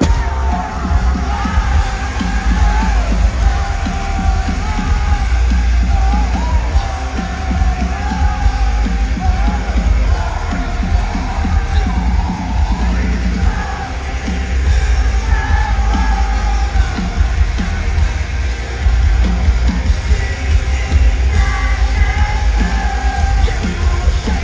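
Heavy rock band playing live at full volume, heard from within the arena crowd: booming bass and drums, with a singer yelling and singing over the music.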